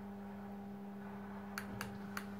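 Electric motorised projector screen's motor humming steadily as the screen unrolls downward, with a few light clicks near the end.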